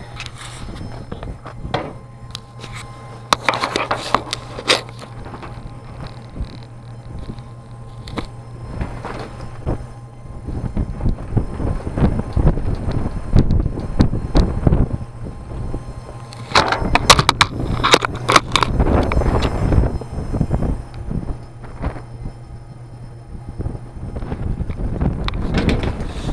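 Strong gusty wind buffeting the camera microphone, rising into heavy rumbling gusts from about ten seconds in, with scattered crackles and knocks. A steady low hum runs underneath during the first ten seconds.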